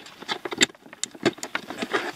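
Irregular plastic clicks and knocks as the green OBD2 code-reader plug is handled and pushed onto the car's diagnostic port under the dashboard.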